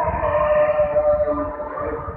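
Fajr adhan, the Islamic call to prayer, sung by a muezzin: long held, slightly wavering notes of the chant, with a low rumble underneath.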